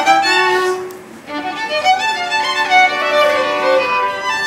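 Two violins playing a bowed duet, with quick changing notes, a brief lull about a second in, then longer held notes.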